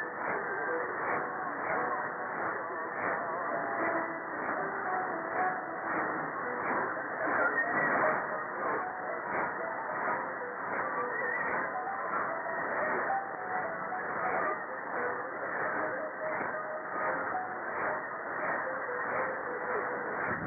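Distant medium-wave AM reception of IRIB, Iran, on 1332 kHz. Weak, muffled programme audio is buried in static, with a steady pulsing in the noise about twice a second.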